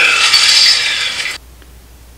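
Loud rustling and scraping of artificial Christmas tree branches being handled, cutting off suddenly about one and a half seconds in.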